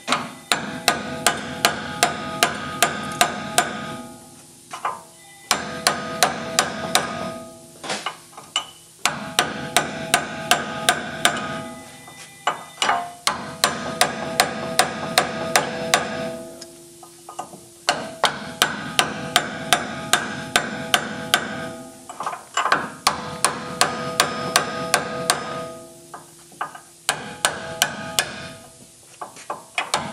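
Chisel hammering metal on metal against the rusted upper ball joint of a 1994 Ford F-150's front steering knuckle, driving the top piece out. The blows come fast, about four a second, with a steady metallic ring, in bursts of three to four seconds broken by short pauses.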